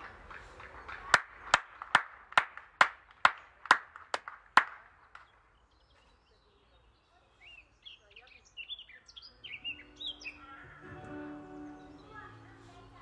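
About ten sharp, evenly spaced strikes, a little over two a second, then a songbird chirping a few seconds later. A few held musical notes begin near the end.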